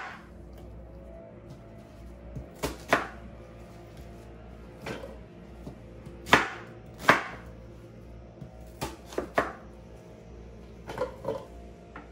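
Kitchen knife cutting an onion on a wooden cutting board: single sharp chops at irregular intervals, about one every second or so, a couple of them in quick pairs.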